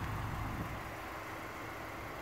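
Quiet, steady outdoor background noise: a low rumble with a faint hiss over it, easing slightly after the first half second.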